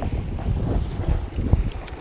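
Wind buffeting the microphone in uneven gusts, with a couple of light clicks near the end as the kayak's anchor gear is handled.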